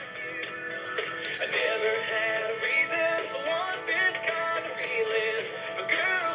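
Music with singing from an FM broadcast station, demodulated and played through a Motorola communications system analyzer's monitor speaker. It crashes on the peaks: the station's modulation is running hot.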